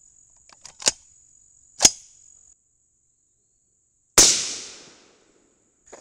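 Two sharp clicks about a second apart, then a single shot from an AR-style rifle chambered in 22 Nosler, about four seconds in, its report dying away over about a second.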